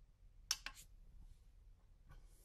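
Three quick, faint clicks about half a second in from pressing the button on a small digital pocket scale, switching it back on.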